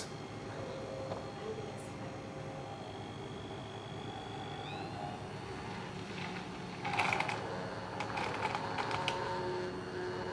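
Bamix immersion blender with its aerator disc running steadily in cold skim milk, whipping it into froth; it grows louder from about seven seconds in.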